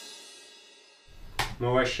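Drum kit cymbals ringing out after the final hit of a song and fading away over about a second. A sharp knock follows, then a man's voice begins to speak near the end.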